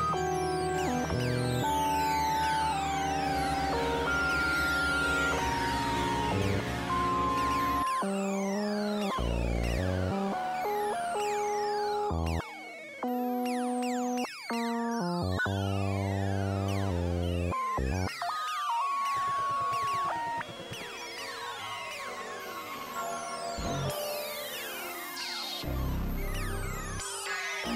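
Experimental electronic synthesizer music: dense, dissonant layers of falling pitch sweeps over held tones that step from pitch to pitch and a low drone, broken by abrupt cuts and changes. It thins out and gets quieter in the last third.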